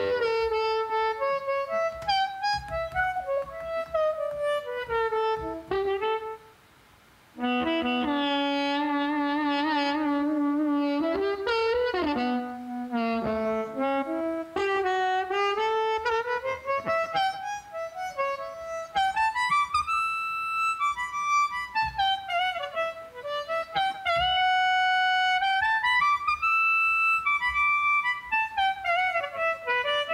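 Recorded harmonica played back on its own, one line of bent, sliding notes. It sounds through a narrow EQ band boosted by about 10 dB that is swept across the upper frequencies to find where the harmonica rings. The playback drops out for about a second near six seconds in.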